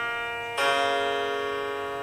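Grand piano chords ringing: a held chord sounds, then a new, louder chord is struck about half a second in and left to ring, slowly fading. These are the closing chords of the piece.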